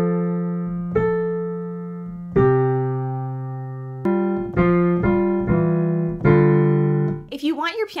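Digital piano played in a halting, choppy way: uneven chords, some held long and others cut short, with hesitations between them. This is awkward beginner playing, shown on purpose.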